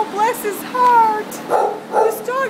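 A young Labrador retriever whining in short high calls that bend up and down, with a short rough bark near the end.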